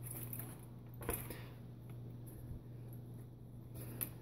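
Faint handling noise from an HPI Savage X 1/8-scale RC monster truck being turned by hand on a wooden workbench: one soft knock about a second in, over a steady low hum.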